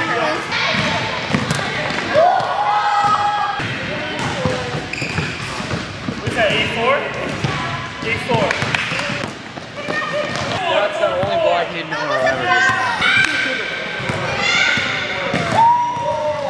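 Basketballs bouncing on a hardwood gym floor in repeated knocks, with kids' voices shouting and chattering throughout.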